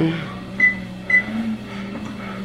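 Two short high beeps about half a second apart from a treadmill's control panel, over the steady low hum of the running treadmill.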